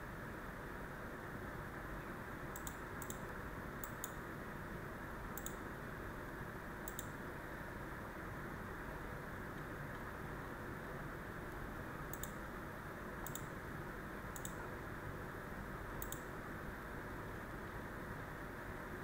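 Computer mouse clicks, about ten separate sharp clicks at irregular intervals, over a steady low hiss of room and microphone noise.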